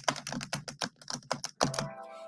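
Rapid computer keyboard typing, a quick run of key clicks at roughly a dozen a second, with a short steady tone coming in near the end.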